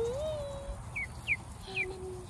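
Ducklings peeping: three short, high, falling peeps in the second half.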